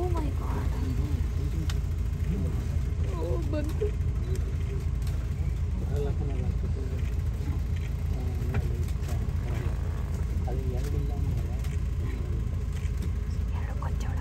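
Safari jeep's engine idling steadily as a low rumble, with people talking quietly over it.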